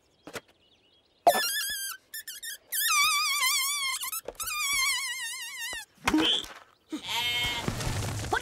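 A flock of cartoon sheep bleating together in a wavering chorus. A single bleat comes first, then many voices overlap for about three seconds, and rougher, noisier calls follow near the end.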